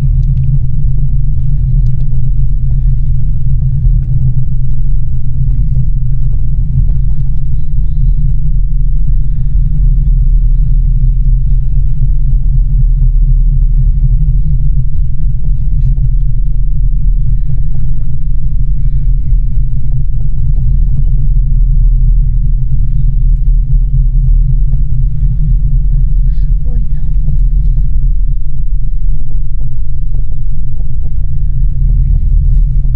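Steady, loud low rumble inside a moving ropeway gondola cabin as it runs along the cable.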